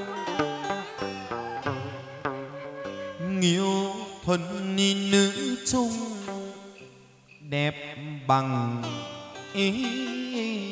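Vietnamese chầu văn ritual music in an instrumental passage without singing: plucked lute notes that slide in pitch, over sharp percussion clicks.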